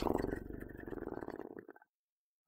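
A man's low, drawn-out appreciative "mmm" in a creaky, rumbling voice, fading out near the end.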